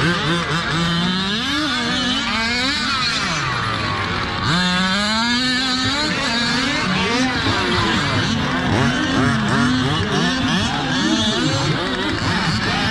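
Several RC race cars' small two-stroke engines racing together, many pitches overlapping and rising and falling as each one revs and backs off.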